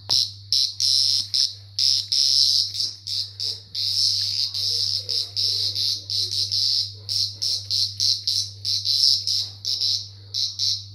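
A cicada buzzing loudly in short, stuttering bursts, with one longer unbroken buzz of about three seconds in the middle. It is the harsh distress buzz of a cicada caught and batted about by a cat.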